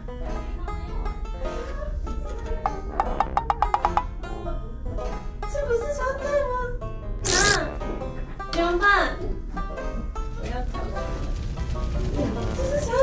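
Edited-in background music, light and plucked, with a quick run of banjo-like notes about three seconds in. A woman's voice speaks briefly over it.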